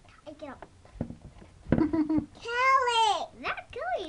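Children's voices: a child calling out in a high, sliding voice past the middle, with a few short knocks and rustles before it.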